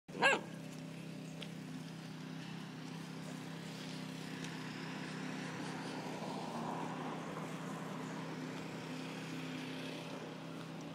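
A basset hound puppy gives one short, high-pitched yip right at the start, over a steady low hum.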